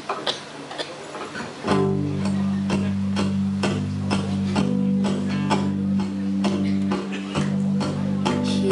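Acoustic guitar strummed in a steady rhythm as a song's intro, starting about two seconds in, with a held low note underneath. Before it comes in, a few scattered clicks.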